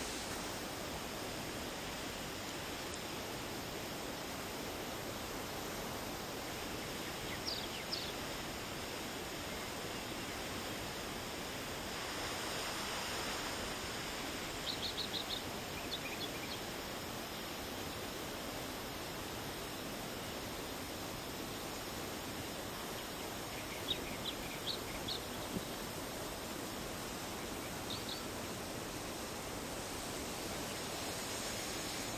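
Steady outdoor hiss of moving air and water, with small birds giving short high chirps several times, including a quick run of four about halfway through. The hiss swells briefly a little before that.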